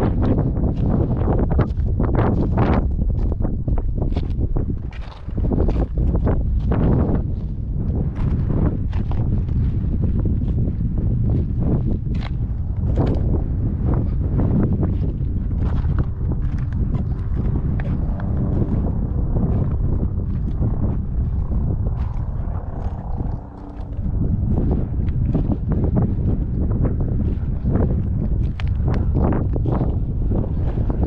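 Footsteps crunching on a gravelly lava-rock trail at a walking pace, irregular sharp crunches over a steady wind rumble on the microphone.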